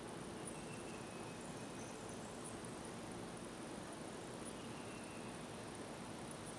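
Quiet outdoor woodland ambience: a steady faint hiss with a thin, high insect buzz running through it and a couple of faint higher calls.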